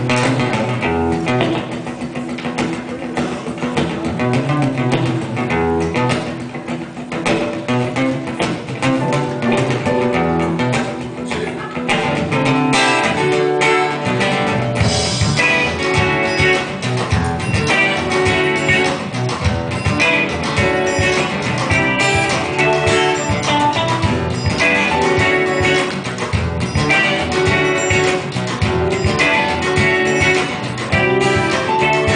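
Solo acoustic guitar playing an instrumental intro, strummed chords that grow fuller and more rhythmic from about halfway.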